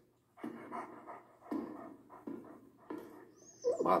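A dog panting in a string of short breaths.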